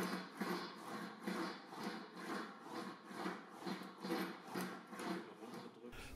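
Sheet-metal fender panel being rolled back and forth through an English wheel under light pressure, stretching it in all directions to finalise its curve: a faint, rhythmic rolling rub of about three strokes a second.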